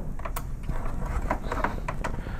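Faint handling noise: a few soft clicks and rustles of a plastic filament feeder tube being worked into a hole in a 3D printer's plastic door.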